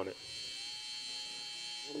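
Gold cordless hair trimmer running, a steady high-pitched buzz with a thin whine.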